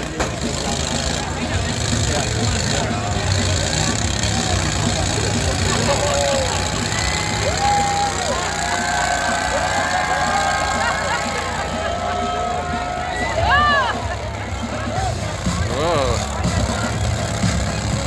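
John Deere garden tractor engines running, mixed with crowd chatter and music over the fairground speakers.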